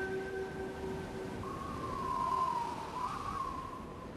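Soft flute music. A low held note fades out in the first second, then a single wavering higher note bends down and back up through the middle.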